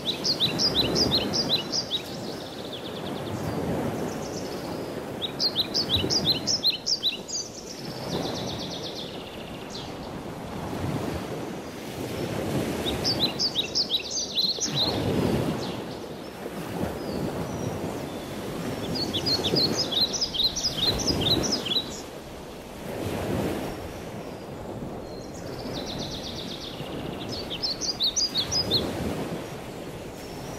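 A songbird giving five bursts of quick, high chirps, each burst about a second and a half long, spaced several seconds apart, over a steady rushing background that swells and fades.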